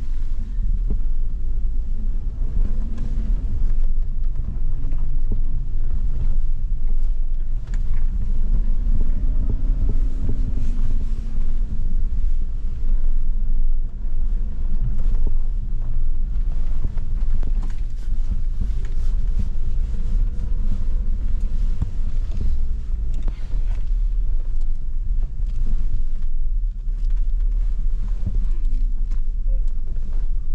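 Suzuki Jimny's engine crawling slowly over rough, axle-twisting off-road ruts, heard from inside the cabin: a low steady drone whose pitch rises and falls gently a few times, with scattered knocks and bumps.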